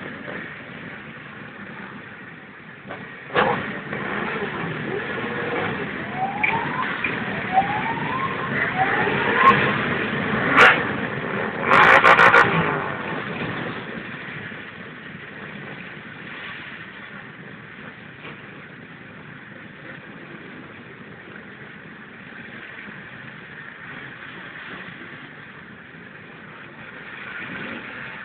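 Many motorcycle engines idling and revving in a crowded square, with a run of four rising revs about six to ten seconds in and two sharp cracks. There is a loud burst about twelve seconds in, then the engines settle to a lower, steady running.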